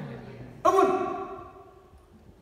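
A man's voice: one short, loud exclaimed word or breathy utterance a little over half a second in, fading away in the hall's reverberation.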